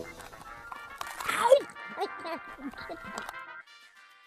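A cartoon animal character's voice: a high squeal about a second in, then a string of short stifled giggles, over faint background music, fading out near the end.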